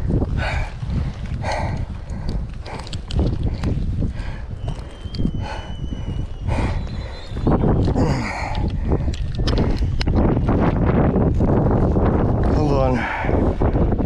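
Handling noise close to the microphone as a landed striped bass is held and unhooked, with scattered rustles and knocks over a steady low rumble of wind and surf.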